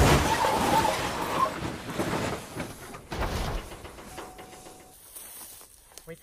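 A car crashing: a sharp impact, then skidding and scraping over rough ground with a few further knocks, dying away over about five seconds.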